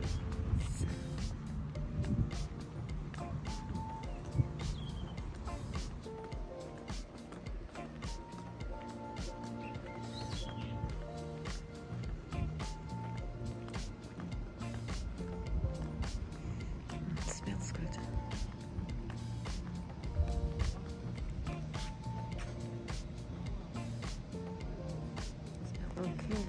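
Background music: a melody of short held notes that runs throughout.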